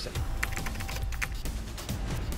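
A quick run of typewriter-style key clicks over steady background music, a sound effect for a caption typing onto the screen.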